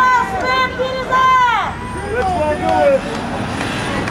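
Loud, high-pitched shouting voices, with one long yell that falls in pitch about a second in.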